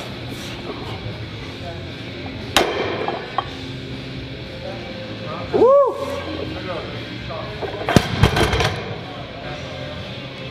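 A loaded barbell with rubber bumper plates is dropped from a deadlift lockout about eight seconds in. It lands on the gym floor with a heavy thud followed by a few quick bounces. Earlier there is a single sharp knock and one short shout that rises and falls.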